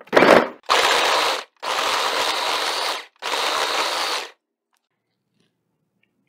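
Countertop blender pulsed four times in quick succession, its blades grinding raw chicken with bone, organ meat and sardines to crush the bone; the bursts run short at first, then longer, and stop about four seconds in.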